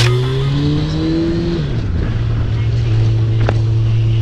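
Sport motorcycle engine under way, heard from the rider's seat: the revs climb steadily for about a second and a half, drop sharply, then hold steady.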